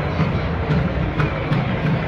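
Busy outdoor street ambience: crowd noise over a loud, steady low rumble.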